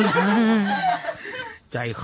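Speech: a monk's preaching voice drawing out one word for about a second, fading, then a brief pause before the next word near the end.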